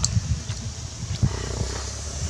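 Uneven low rumble of wind buffeting the microphone, with a few light clicks as grilled snail shells are handled.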